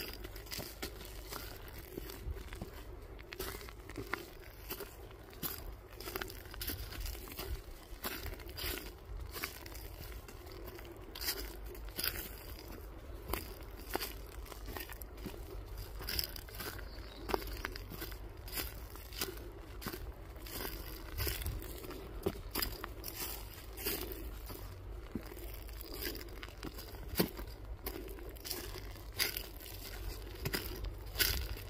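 Footsteps crunching on a dirt forest trail strewn with dead leaves and twigs, at a walking pace.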